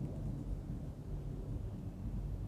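Low, steady background rumble of room noise, with no distinct event.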